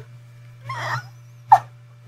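A woman's stifled laughter: a breathy, wheezing burst just under a second in, then a short, sharp, high squeal about halfway through.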